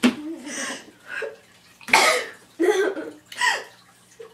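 A woman coughing repeatedly, a run of short coughs with the loudest about halfway through, which she wonders may be an allergic reaction to the face mask she has on.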